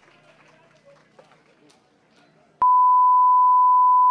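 Faint crowd and room noise, then about two-thirds of the way in a click and a loud, steady 1 kHz test tone. This is the line-up reference tone that goes with video colour bars.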